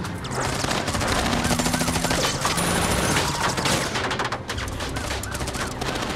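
Dense automatic gunfire, a long run of rapid shots, heard from inside a car under attack, with bullets striking its glass and bodywork.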